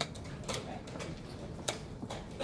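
Sharp clicks of blitz chess play: wooden pieces set down on boards and chess clock buttons pressed, three crisp clicks in under two seconds over the low hum of a large hall.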